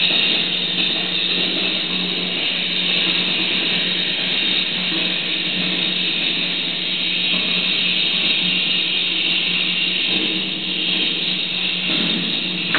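Amplified electronic noise played live: a loud, steady wall of hiss over a constant low hum, with no beat or melody.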